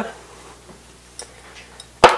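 Quiet kitchen room tone with two faint ticks as a large kitchen knife is handled and lowered over the pizza, just before it cuts.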